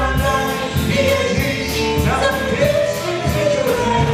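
Small amplified band playing a song live: drum kit keeping a steady beat on the cymbals, electric guitar and keyboard, with singing into a microphone.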